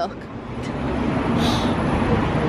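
Street traffic noise, a passing vehicle's low rumble growing louder after the first half-second and then holding steady, with a short hiss about halfway through.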